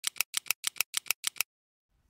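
A quick run of sharp clicks in pairs, about ten in all, like a ticking intro sound effect, stopping about one and a half seconds in.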